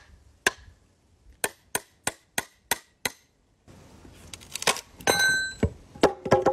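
Hammer blows on a steel froe driving it down into an ash log: a few single strikes, then a run of six quick blows about three a second. Toward the end the wood cracks and creaks as the split opens, and a slice drops away with a thud.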